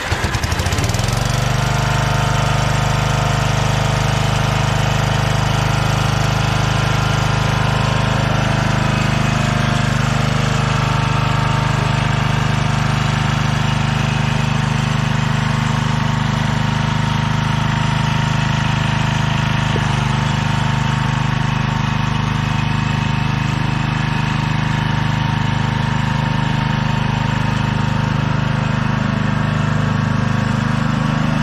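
Riding lawn mower's small gasoline engine, just started, settling within the first second into a steady, even run as the mower drives across grass.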